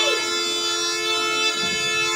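Snake charmer's been (pungi), a gourd wind instrument with reed pipes, playing a steady held note over its continuous drone.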